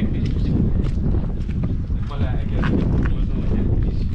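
Wind buffeting the microphone in a continuous low rumble, with brief indistinct voices.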